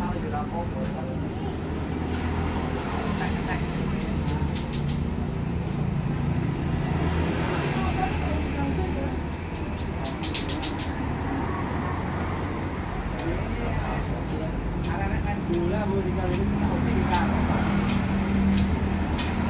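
A motorcycle engine running at a steady idle, with indistinct voices of people talking over it. There is a short run of sharp clicks about ten seconds in.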